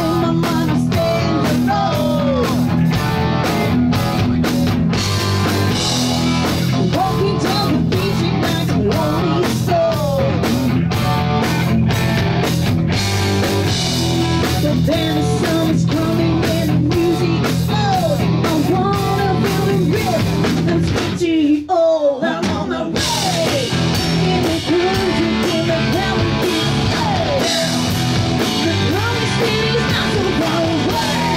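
Live rock band playing loudly: distorted electric guitar, bass and drum kit, with a woman singing. About 21 seconds in, the band stops briefly while one note slides downward, then the full band comes back in.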